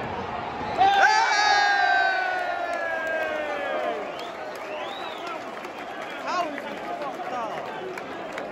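Football stadium crowd, with a man close by letting out one loud, long shout about a second in that falls slowly in pitch, then a rising-and-falling whistle and scattered shouts over the crowd noise.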